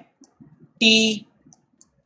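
A man's voice saying the letter "T" once, spelling out the word "its", with a few faint scattered clicks before and after it from handwriting on screen with a digital input device.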